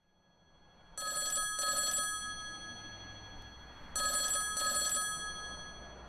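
A phone ringing with a classic double ring: two rings about three seconds apart, each a pair of short pulses.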